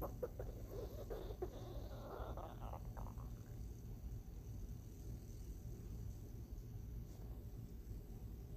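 Wooden spatula stirring and scraping shredded Brussels sprouts and onions as they sauté in a stainless steel skillet: scattered clicks and scrapes for the first three seconds or so. A low steady hum runs underneath.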